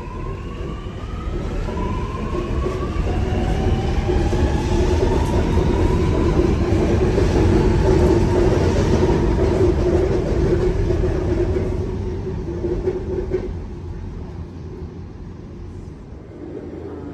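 Sydney Metro Alstom Metropolis train pulling away from the platform: its traction motors whine in several tones that climb in pitch over the first few seconds as it accelerates, over a rumble that builds to its loudest around the middle and then fades.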